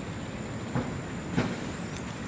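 A steady low rumble with two short thumps about two-thirds of a second apart, under a thin, high, steady whine.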